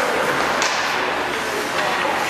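Ice hockey skates carving and scraping on the rink ice in a steady hiss, with a sharper scrape about half a second in.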